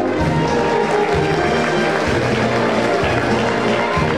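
Full wind band playing a loud passage, brass and woodwinds together, with the low notes changing about once a second.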